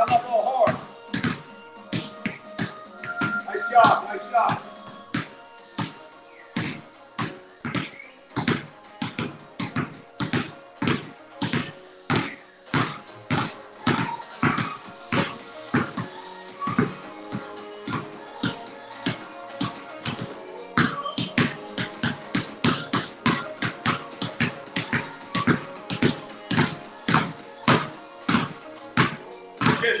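Basketballs dribbled hard on a concrete garage floor, a steady run of even bounces, a little over two a second, kept at about knee height.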